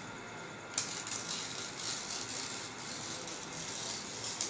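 A sheet of thin pink craft paper being torn by hand, a dry ripping rustle that starts about a second in and lasts nearly three seconds.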